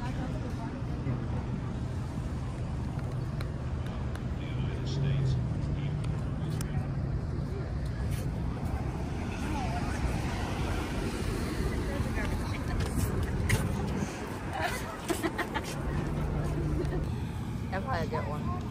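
Steady low rumble of outdoor background noise, with indistinct voices of people around now and then.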